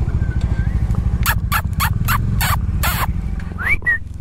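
Motorcycle engine idling with a steady low rumble. From about a second in, a quick series of about six short, sharp, chirping calls comes over it, followed by a couple of rising whistle-like calls near the end.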